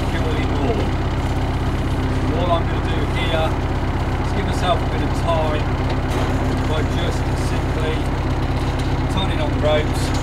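Narrowboat's diesel engine idling steadily, a constant low drone.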